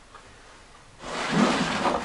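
Wooden sliding door of a box bed being pushed open by hand, scraping wood on wood along its runner. The scrape starts about halfway through.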